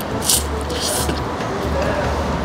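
A mouthful of curly noodles slurped in off chopsticks, two short slurps about half a second apart.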